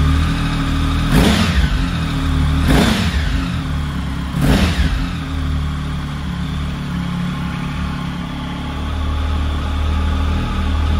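Triumph Speed Triple R 1050's inline three-cylinder engine idling through Arrow aftermarket silencers, its throttle blipped three times, about a second and a half apart, in the first five seconds, each a quick rise and fall in revs. It then settles back to a steady idle.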